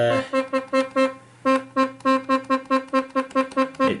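Casio digital horn sounding quick short electronic notes, mostly on one pitch at about five a second, with a brief break a little over a second in.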